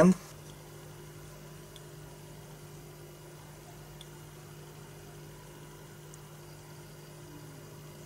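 Faint steady low hum with two unchanging tones and no other events: background room tone.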